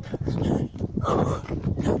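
A woman running hard and panting heavily: quick, rhythmic breaths, about three a second.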